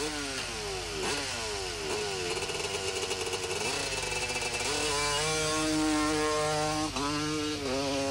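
Off-road racing motorcycle engines revving as the bikes leave the start line: a series of falling-pitch rev sweeps in the first couple of seconds, then one engine holding a steady, high rev from about five seconds in, with a brief dip near seven seconds.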